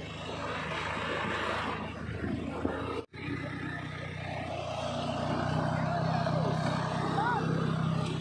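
Steady low engine hum with rolling road noise from the vehicle towing an open farm wagon along a gravel lane, starting after a brief dropout about three seconds in and growing a little louder. Faint voices can be heard at times.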